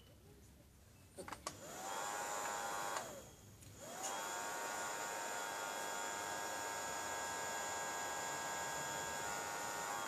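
Small electric nail polish dryer fan whirring: it spins up, rising in pitch, a little over a second in, cuts off about three seconds in, then starts again a second later and runs steadily.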